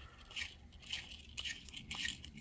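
Faint, uneven scraping with a few small clicks: a .338 Winchester Magnum brass case being turned by hand against a hand-held chamfer and deburring tool.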